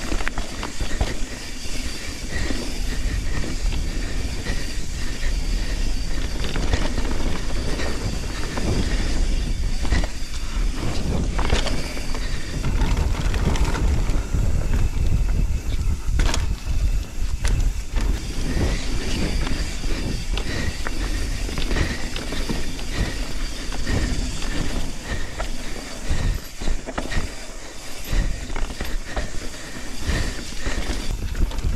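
Full-suspension mountain bike being ridden along a dirt forest trail: knobby tyres rolling over dirt and roots, and the bike rattling, with many small knocks and clicks throughout over a steady low rumble.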